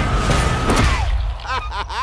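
Animated-film trailer sound mix: a loud rushing whoosh under a long held high note that drops in pitch and cuts off about a second in, then a few quick squeaky cartoon sound effects as a cartoon cat slams against a tree.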